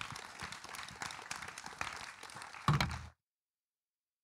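Audience applauding. About three seconds in there is a single thump, then the sound cuts off abruptly.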